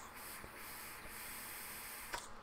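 One long, steady draw on a vape: a faint hiss of air and vapour pulled through the device.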